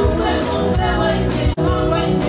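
Live band music with a singer's voice, broken by a momentary gap in the sound about one and a half seconds in.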